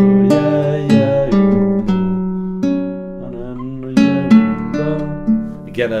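Nylon-string classical guitar playing a slow baroque chaconne chord progression in D, with one note of a chord held over into the next and resolving down (a suspension, giving a D major seven over F sharp sound going up to D). New chords are plucked about every half second, with a lull about three seconds in before playing resumes near four seconds.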